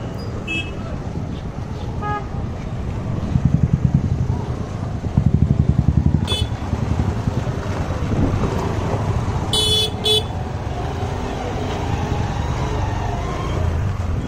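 Heavy street traffic of auto-rickshaws and motorbikes running close by, with a nearby engine pulsing louder about three to six seconds in. Short horn toots sound several times, with two quick blasts about ten seconds in.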